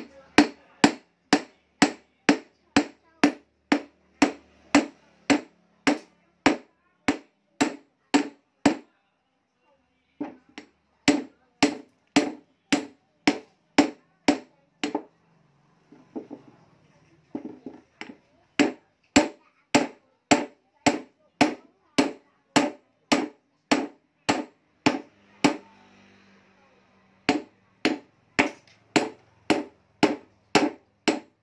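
Steel claw hammer striking a chunk of gold ore resting on a cloth over a wooden board, breaking it apart. The blows come at about two to three a second in runs, with brief pauses between them.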